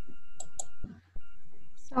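A steady electrical hum made of several fixed tones, with a few faint clicks and a brief dropout about a second in.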